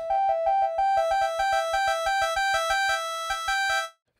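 Synth patch built from sampled Korg MS-20 oscillators playing a fast run of short notes, about five a second, alternating between two close pitches and rich in overtones. The notes get slightly quieter as the first oscillator's volume is turned down, and they stop just before the end.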